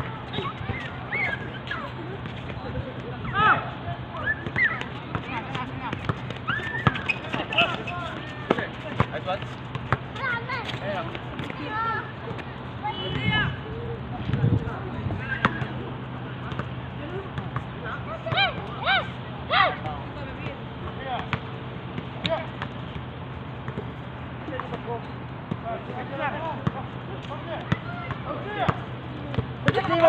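Distant shouts and calls from players during an outdoor basketball game, with a basketball bouncing on the hard court from time to time. A steady low hum runs underneath.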